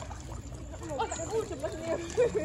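Indistinct voices talking over a low wash of water from a crowd of fish churning at the surface. The voices are strongest in the second half.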